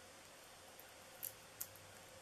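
Near silence broken by two faint short ticks a little over a second in: fingers peeling the backing paper off a small foam adhesive dot (a Stampin' Up! mini dimensional).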